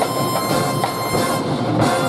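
Drum and bugle corps hornline holding a loud sustained brass chord, with a few percussion strikes underneath.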